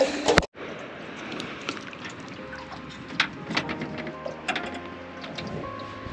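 A sharp click and a brief dropout about half a second in, then quiet noise with scattered small clicks and taps. Background music with held tones comes in from about halfway through.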